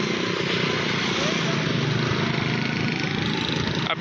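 Honda CD70's single-cylinder four-stroke engine idling steadily.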